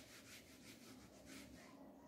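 Faint, quick back-and-forth rubbing of a felt board eraser wiping a whiteboard clean, the strokes fading out near the end.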